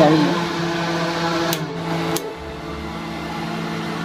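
Nexa air cooler's fan motor running with a steady hum, with two sharp clicks about a second and a half and two seconds in.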